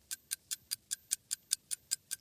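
Evenly spaced ticking, about five ticks a second, like a countdown-timer sound effect.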